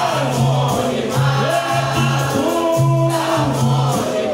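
Capoeira angola roda music: a group chorus singing over the bateria of berimbau and pandeiro, with a steady low twang and a repeating hand-percussion beat.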